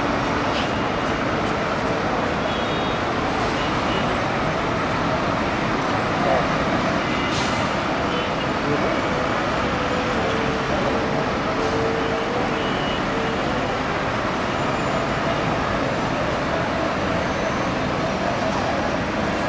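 Steady street ambience of heavy road traffic, buses and cars, mixed with indistinct voices of many people.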